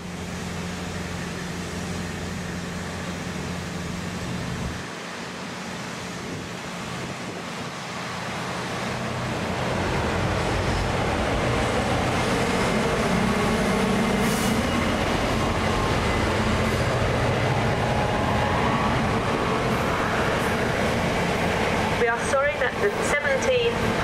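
A Class 66 diesel freight locomotive with an EMD two-stroke V12 engine passes, hauling an intermodal container train. Its low engine drone fades after about five seconds. The rolling rumble of the container wagons on the rails then grows louder from about ten seconds in.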